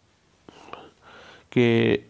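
Near silence, then about a second of faint soft breathy sounds, then a man's voice speaking a single word near the end.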